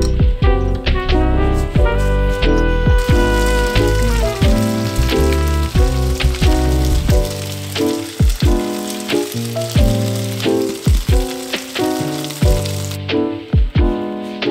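Background music with a steady beat, and from a few seconds in a hiss of food sizzling as it cooks, which stops abruptly near the end.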